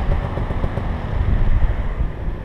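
Dirt bike engine running at low revs, an uneven low rumble.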